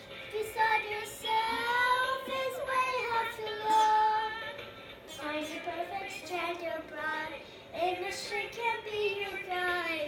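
A young girl singing a song, with several long held notes.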